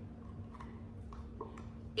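A few faint clicks and taps as the lid comes off a round gold coaster holder and the coaster set is handled.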